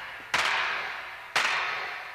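Two loud, sharp percussive cracks about a second apart, each ringing away until the next, part of a steady one-a-second beat.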